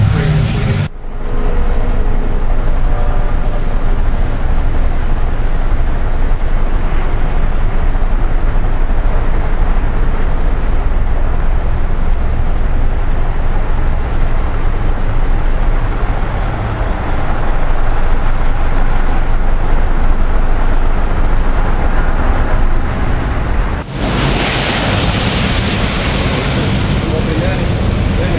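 Busy city street noise: a steady rumble of traffic with indistinct voices, breaking off briefly about a second in and again near the end.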